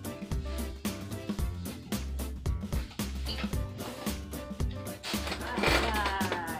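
Background music with a steady beat and bass line.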